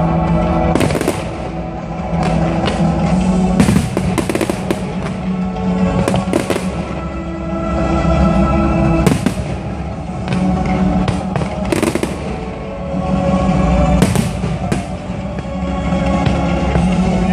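Fireworks bursting and crackling, with sharp bangs every second or two, over continuous music.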